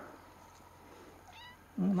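A domestic cat gives one short, high meow about one and a half seconds in. A man's voice starts just at the end.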